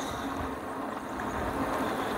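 Steady wind and road noise from an electric bike riding at about 12 mph, picked up by a phone in a handlebar holder.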